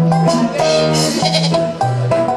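A street brass band playing live and loud: horns over electric guitar, a repeating bass line and a drum kit.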